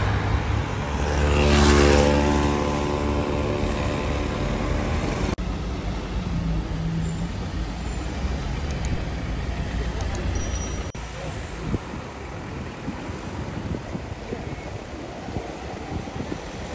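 Street traffic: a car's engine hums as it passes close, loudest about two seconds in, then steady road traffic noise from passing cars.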